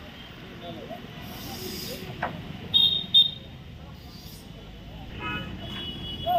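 Roadside street ambience with traffic hum and indistinct voices. A vehicle horn gives two short high toots about three seconds in, and a longer tone comes near the end.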